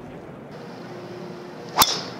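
A golf club strikes a ball off the tee near the end: one sharp crack over faint outdoor background.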